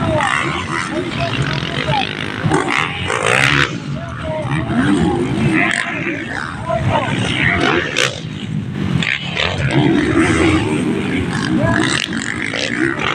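Dirt-bike engines revving on a dirt race track, mixed with spectators' voices and shouts close by.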